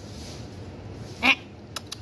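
A cat gives one short meow about a second and a quarter in, followed near the end by a quick run of faint clicks.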